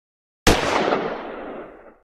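A single gunshot about half a second in: a sharp crack followed by a long echoing tail that fades out.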